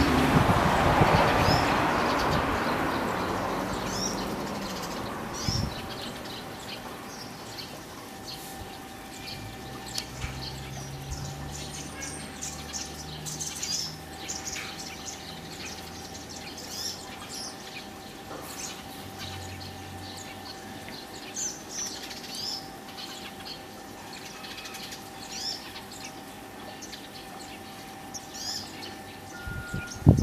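Small birds chirping, many short high chirps scattered throughout, over a steady low hum. A loud rushing noise at the start fades away over the first five seconds.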